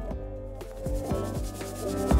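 A scrubbing brush rubbing back and forth along the grout lines of a tiled floor, working a cleaning paste into the joints, with faint background music under it.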